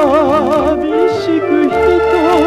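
Music: a Hawaiian steel guitar plays a slow two-note melody with wide, even vibrato, sliding from note to note about a second in and again near the end, over a soft band backing.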